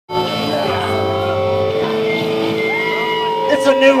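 Amplified electric guitars ringing with long held notes between songs at a live punk show, a low note dropping out under two seconds in. A voice calls out briefly near the end.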